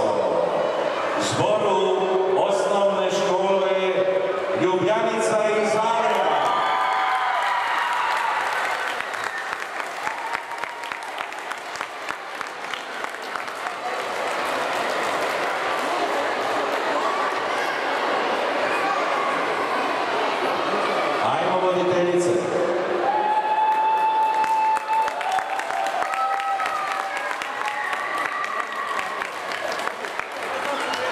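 Audience applauding in a large hall for about fifteen seconds, beginning a few seconds in, with voices heard before and after the clapping.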